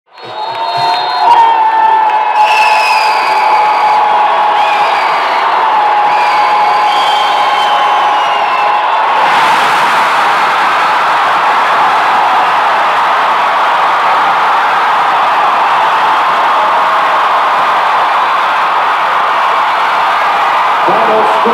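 Arena crowd cheering and screaming at the end of a basketball game, with shrill wavering shrieks standing out over the first several seconds. About nine seconds in, the cheering thickens into a steady, dense wall of noise.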